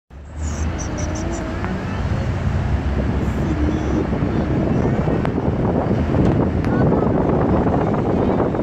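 Road and engine noise heard inside a moving car: a steady low rumble with tyre hiss, slowly growing a little louder.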